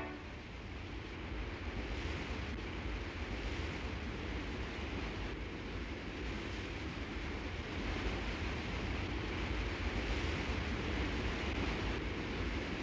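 Steady noise of a ship under way at sea: a low engine rumble under a rushing wash of water.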